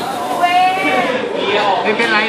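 A person's voice holding one drawn-out, wavering vocal sound over background chatter.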